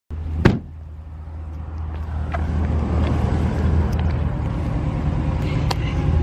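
A motor vehicle's engine running, heard as a steady low rumble that grows slightly louder. A single sharp knock sounds about half a second in, and a few faint ticks follow.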